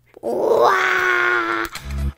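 A long, held vocal cry, flat in pitch, lasting about a second after a rougher start. Music with a heavy bass begins near the end.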